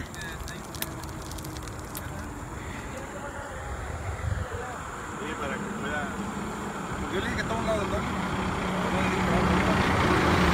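Highway traffic noise with a heavy truck's diesel engine. The engine's steady hum comes in about halfway through and grows louder toward the end as the truck approaches.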